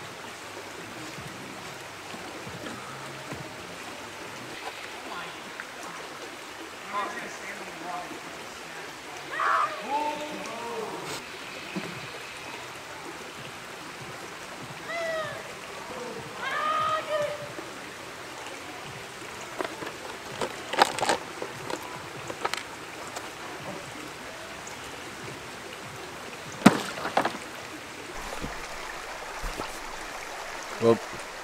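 Creek water running steadily, with a few sharp clicks in the second half and one loud sharp splash a few seconds before the end as a plastic-bottle minnow trap is tossed into the creek.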